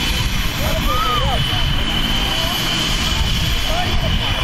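Turbine helicopter running on the ground: a steady high whine over a dense low rumble, with people calling out over it.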